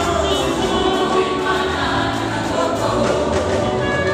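Women's gospel choir singing together through microphones, led by a solo female singer, with a steady low accompaniment underneath.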